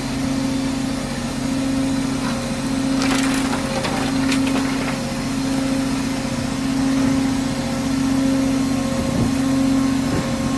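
Ship's engine machinery running with a steady hum, heard from the open deck. A short patch of clicking and clatter comes about three to four and a half seconds in.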